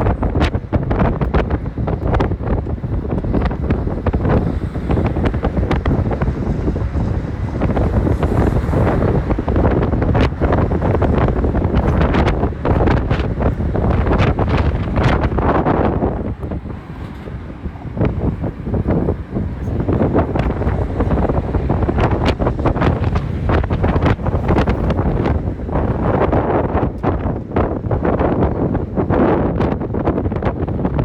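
Wind buffeting the phone microphone on the open top deck of a moving double-decker tour bus, with road and vehicle noise underneath. It eases for a couple of seconds just past the middle, then picks up again.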